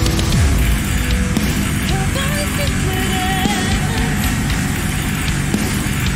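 Dark spoken-word music playing: a voice delivering lyrics over a dense, steady backing track.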